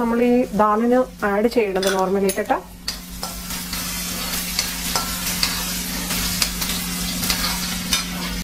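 Chopped ginger and garlic sizzling in hot oil in an aluminium kadai, stirred and scraped with a steel spoon. A voice talks over it for the first two and a half seconds, after which the sizzling and the scraping of the spoon carry on alone.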